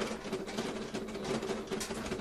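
Serger (overlock machine) running steadily as a pant back seam is fed through, a steady hum with rapid stitching clatter.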